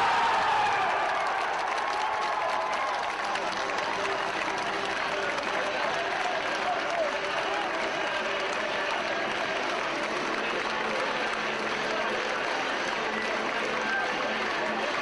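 Football crowd cheering and clapping for a goal: the noise surges up right at the start, then holds as steady cheering, shouting and applause.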